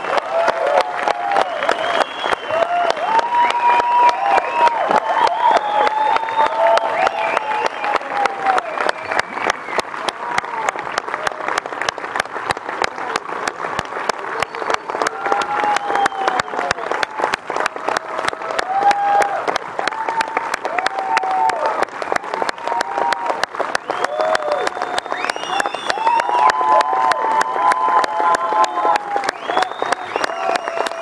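Large audience applauding without a break, the clapping dense and even, with voices calling out over it.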